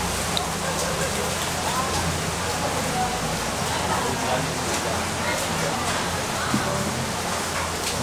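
Steady hiss of background noise with faint voices of other people talking under it.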